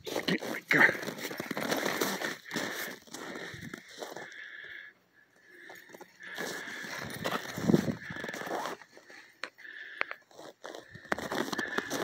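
Irregular crunching on packed snow, like footsteps, mixed with rustling handling noise on the phone's microphone, with a brief quiet gap about five seconds in.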